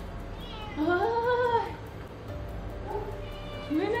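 Domestic cat meowing: one long, drawn-out meow that rises and falls, starting about half a second in, and a second meow beginning near the end.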